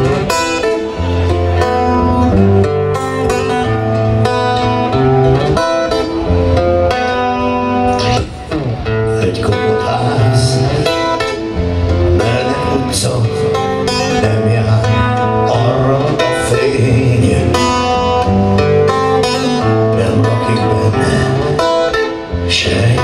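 Live band music led by an amplified acoustic-electric guitar playing a picked instrumental passage over sustained low notes that change every second or two.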